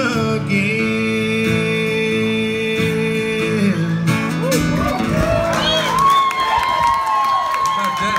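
Two acoustic guitars ringing out the final chord of a live country song, then the audience cheering, whooping and whistling from about four seconds in.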